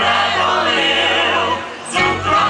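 A folk-pop band playing live, with male voices singing in harmony over button accordion, guitar and double bass. The music dips briefly near the end, then the band comes back in.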